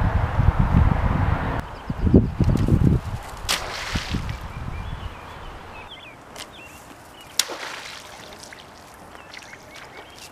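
Wind buffeting the microphone with a low rumble for the first three seconds, then quieter open-air ambience with a few sharp clicks and faint bird chirps.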